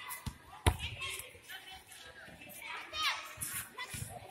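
A basketball striking the concrete floor twice in the first second, the second hit the loudest sound, followed by children's voices and calls.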